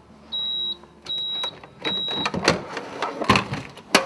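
Three short, high electronic beeps from a Bravilor Bonamat coffee brewer, each about half a second long, followed by a run of clicks and knocks as the stainless airpot and its lid are handled. The loudest knocks come near the end.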